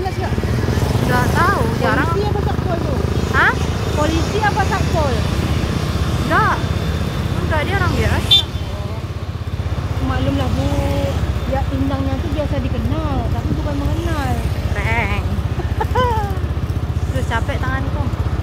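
Motorcycle engine running steadily on the move, with indistinct voices over it and a single sharp knock about eight seconds in.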